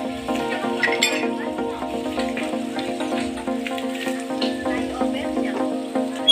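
Background music with sustained chords and short higher notes over them.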